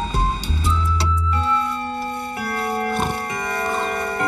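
Cartoon soundtrack: a low car-engine rumble with a few clicks for the first second and a half, then soft held keyboard-like music notes that change pitch in steps.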